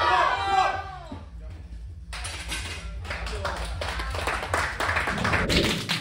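A small crowd of people shouting encouragement at a straining lifter in the first second, then clapping for about three seconds. Near the end it switches to background music.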